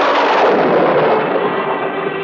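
A loud sudden boom sound effect that dies away slowly over about two seconds, its upper part fading first. A held note of background music sounds beneath it.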